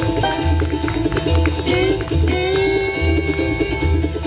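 Bluegrass band playing, led by a fiddle bowing long, sliding high notes that imitate a lonesome train whistle, over plucked strings and an upright bass note about once a second.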